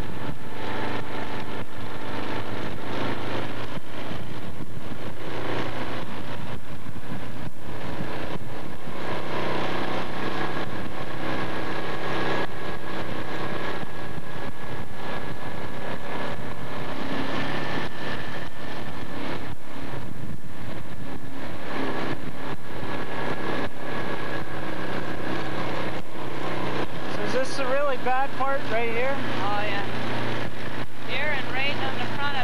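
A vehicle engine running steadily, with indistinct voices in the last few seconds.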